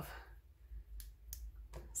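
A few small, sharp plastic clicks from a light-up lip gloss being handled as its built-in light is switched off.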